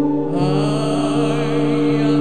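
Sustained electronic drone from a VCV Rack software modular synthesizer with a wordless, chant-like voice held over it. About half a second in, a brighter wavering layer comes in above the steady tones.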